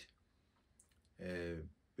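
A man's voice holding one short, steady vowel, a hesitation sound between phrases, a little past halfway through. Before it the room is quiet except for a faint click.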